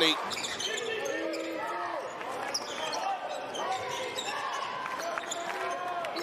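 Live basketball court sound in an arena: a ball bouncing on the hardwood floor, with short pitched squeaks and calls and voices around it.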